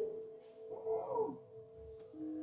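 Recorded animal call played in a museum diorama: a call that rises and then falls in pitch, starting about half a second in and lasting under a second, repeating roughly every two seconds, over a steady humming tone.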